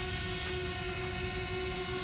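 DJI Spark quadcopter hovering, its propellers giving a steady high whine of several even tones over a low rumble.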